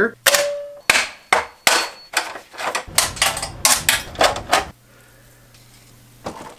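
A run of about a dozen sharp knocks and taps on metal, irregularly spaced and some ringing briefly, from work on an electrical sub panel. They stop about three-quarters of the way through.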